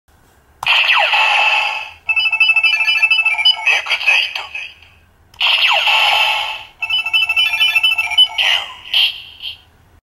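Two Kamen Rider Zi-O DX Ride Watch toys, Ex-Aid and then Ryuki, each set off in turn. From a small toy speaker comes an electronic voice call and a jingle of stepped beeping tones. The first starts about half a second in, the second about halfway through.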